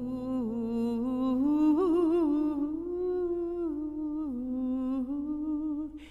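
A woman's voice holding long, slow sung notes, hummed or on an open vowel, stepping between pitches a few times, with a wavering vibrato about two seconds in.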